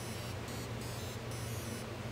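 Quiet room tone: a steady low hum under a faint even hiss, with no distinct event.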